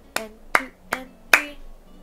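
Hand claps beating out a rhythm: four sharp, evenly spaced claps a little under half a second apart.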